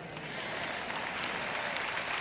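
Audience applauding, a steady patter that grows a little louder.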